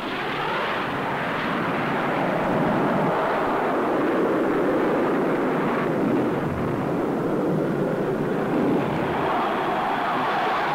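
Jet fighter aircraft in flight, the engine noise swelling over the first few seconds and then holding steady.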